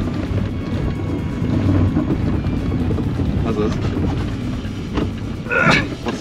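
An old Suzuki Swift hatchback's engine running hard, its revs rising and falling as the car is driven quickly through a tight course.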